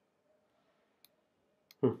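Two faint, sharp mouse clicks, about a second in and again just before a short spoken 'hı' at the end, over near silence.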